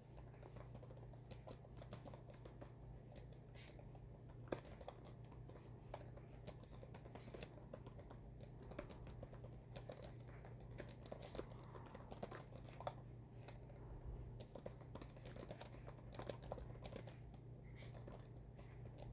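Typing on a computer keyboard: a faint, irregular run of key clicks as a sentence is typed out.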